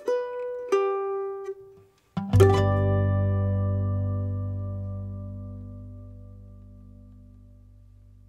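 Closing notes of a song on acoustic plucked strings: a few single notes, a brief pause, then a last chord struck about two seconds in that rings on and slowly fades away.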